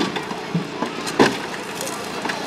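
A car's side door being forced back past its hinges during a rescue extrication, creaking with sharp cracks of bending metal and trim: one at the very start and a louder one just past a second in.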